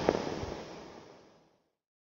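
A fading, crackling hiss with a couple of faint clicks near the start, dying away to silence about a second in: the tail of the end-card sound effect.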